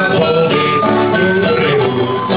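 Live folk band playing an instrumental passage of a sea song: acoustic guitar strumming under a held melody from a wind instrument.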